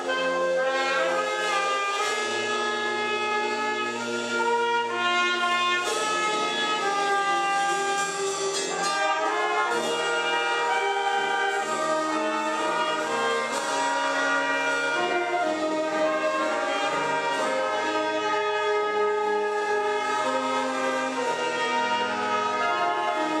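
A wind band playing together: trumpets, clarinets and saxophone sound sustained chords, the low parts holding long notes under moving upper lines.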